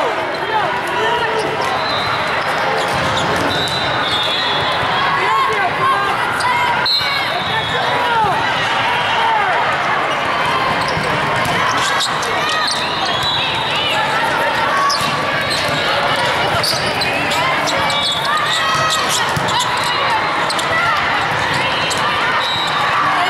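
Busy hubbub of a large hall full of volleyball courts: many overlapping voices and players' calls, with volleyballs being struck and bouncing off the floor again and again.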